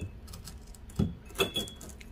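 Small matte-glazed white-porcelain flowerpot set down on a wooden tabletop and nudged into line: a few light clinks and knocks, the loudest a little after a second in.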